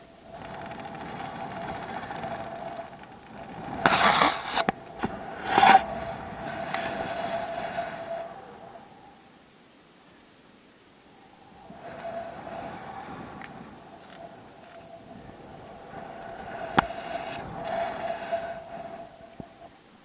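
Wind rushing over an action camera's microphone as a rope jumper swings on the rope, with a whistling tone over the rush. It swells twice with a lull between, as the swing slows at its turning point, and loud buffets knock against the microphone about four and six seconds in.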